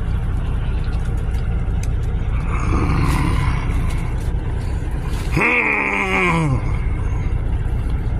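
A man's long, falling groan of pleasure, a growl over his food, about five and a half seconds in while he chews a mouthful of burger. Under it runs the steady low rumble of the idling vehicle he sits in.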